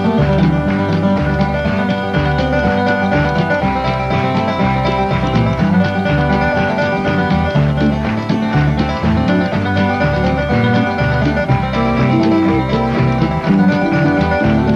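Live instrumental bluegrass-country tune: a resonator guitar (dobro) picked lead over strummed acoustic guitars and a bass line that steps along in steady notes.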